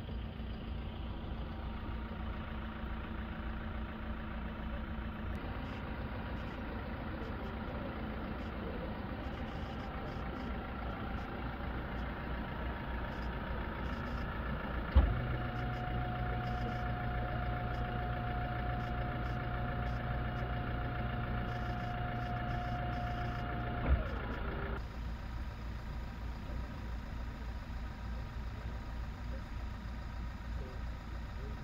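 Engine of a stretched Toyota SUV hearse idling steadily. About halfway through a sharp click brings in a steady high tone over a hum. Both cut off with another click some nine seconds later.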